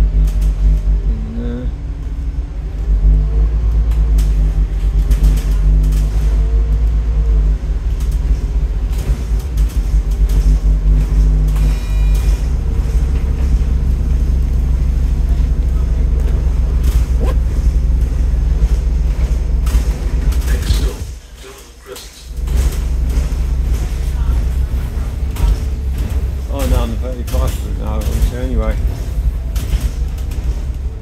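Scania N230UD double-decker bus's diesel engine running as the bus drives along, a loud steady rumble heard from the upper deck; the rumble drops away briefly for about a second some two-thirds of the way through. Short bursts of voice come at the very start and near the end.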